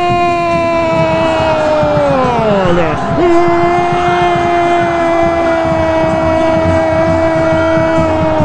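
A radio football commentator's long, drawn-out goal shout, one high note held steady; it sags in pitch and breaks for breath about three seconds in, then starts again at once and is held on the same note until it falls away near the end.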